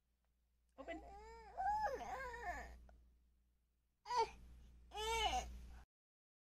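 A child's voice making drawn-out, wavering whines in two bursts, the first about a second in and the second about four seconds in.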